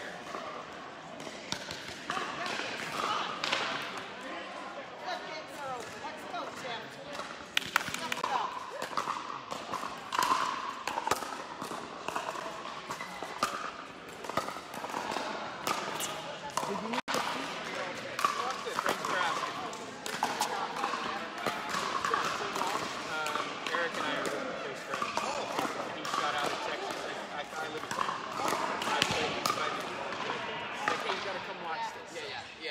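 Pickleball paddles striking a plastic ball in sharp pops at irregular intervals, with the ball bouncing on the court, over a background of voices.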